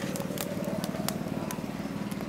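A small engine running steadily as a low pulsing hum, with a few faint sharp clicks from the wood fire crackling under the pots.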